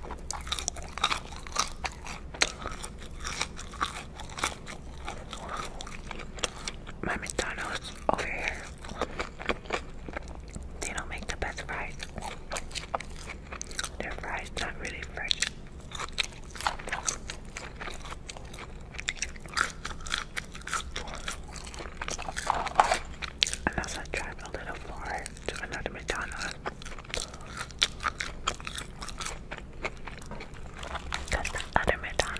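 Close-miked eating sounds: a person biting and chewing French fries, with a dense run of small wet mouth clicks and smacks.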